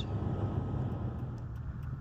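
Steady road and engine noise heard inside a vehicle moving at highway speed: a low, even rumble with tyre hiss.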